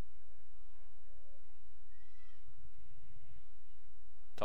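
Faint, distant shouts and calls from players on an outdoor field, over a steady low hum.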